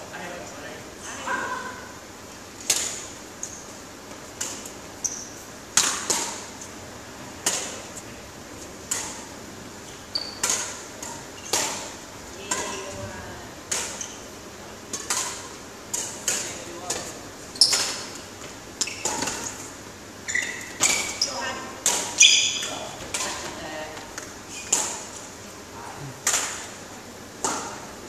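Badminton rally: rackets striking a shuttlecock about once a second, each hit a sharp crack that rings briefly in a large hall.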